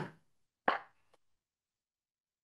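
The last of a spoken word trailing off, then a single short pop about two-thirds of a second in, like a click of the mouth during a pause in speech.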